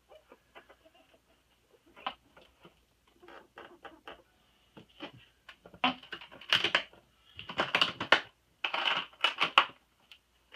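Paper and plastic rustling with small clicks as documentation is handled and put back into a guitar case, with louder crinkling bursts in the second half.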